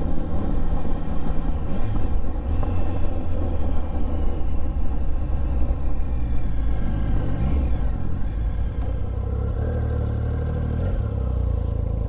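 Triumph Speed Triple 1050 three-cylinder engine with an Arrow exhaust, running while the motorcycle is ridden, under rumbling wind on the helmet microphone. The engine note shifts in pitch around the middle, then runs lower and steadier in the last few seconds.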